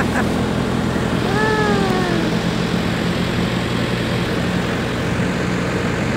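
The river ferry's engine runs with a steady low drone. Just over a second in, a voice calls out once, a drawn-out call falling in pitch for about a second.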